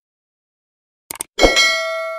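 A quick double mouse-click sound effect about a second in, then a bell ding that rings with several clear tones and cuts off suddenly: the click-and-notification-bell effects of a subscribe-button animation.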